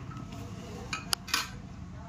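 A thin metal blade dropped onto a marble countertop, clinking three times in quick succession about a second in as it lands and settles, the middle clink sharp with a brief high ring.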